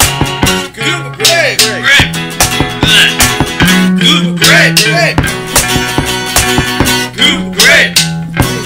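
Home-recorded rock song: drumsticks beating a steady rhythm on a carpeted floor in place of drums, under a bass guitar line and acoustic guitar.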